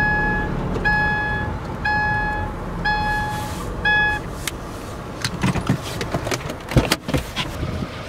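A car's electronic warning chime beeping steadily about once a second, five times, stopping about four seconds in, over the low rumble of the car. Near the end come a few sharp knocks and scuffs as the car door is opened.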